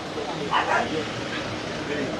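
Background chatter of several people, with one short call about half a second in.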